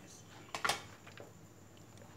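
A quick pair of sharp clicks about half a second in, then a few faint ticks: small handling noises of a hand at steel prep bowls, over a faint steady hum.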